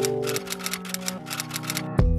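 Typewriter key clacks, a quick run of about eight a second, typing out a title over background music with held notes. The clacks stop shortly before the end.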